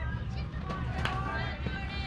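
Distant, indistinct calls and chatter of baseball players and spectators, over a steady low rumble.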